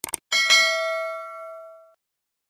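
Subscribe-button animation sound effect: two quick mouse clicks, then a bright bell ding with several ringing pitches that fades and cuts off near the end.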